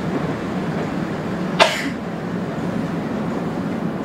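Kobe Electric Railway 1100-series electric train, heard from behind the driver's cab, running with a steady low rumble as it pulls out of a station. About one and a half seconds in, a single short, sharp burst of noise stands out as the loudest moment.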